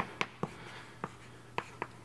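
Chalk on a blackboard as an equation is written: about six short, sharp taps and strokes at uneven spacing.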